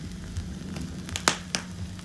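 Vinyl record surface noise as the stylus tracks the lead-in groove before the music: a steady low hum with scattered crackles and a few sharp pops past the middle.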